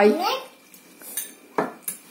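Spoons clinking against bowls: a few short, light clinks in the second half, the loudest about a second and a half in.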